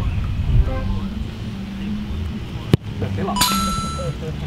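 A sharp click nearly three seconds in, then a short electronic video-game '1-up' chime sound effect near the end, over a low outdoor rumble.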